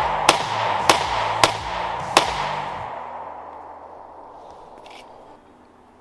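Tokarev TT-33 pistol firing 7.62x25 rounds: four shots about half a second apart, the last about two seconds in.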